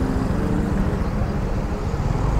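Steady street traffic noise from cars and a motorbike passing slowly.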